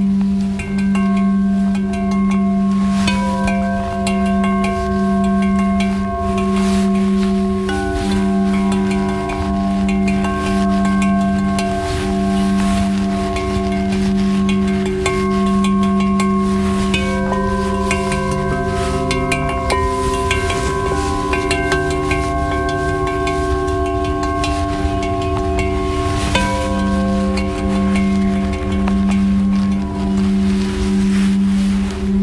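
Quartz crystal singing bowls ringing together. A low bowl tone pulses in a slow, even rhythm, about once every second or so, under several higher bowl tones held long and steady. The low pulse drops out for several seconds past the middle, then returns near the end.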